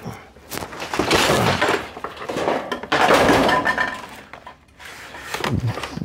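Clattering and scraping as a push lawnmower and the stored things beneath it are shifted by hand, in two bouts about a second in and about three seconds in.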